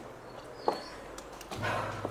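A single short, sharp animal call, like a dog's yelp, less than a second in, after a faint high chirp, over a quiet outdoor background; a low hum sets in near the end.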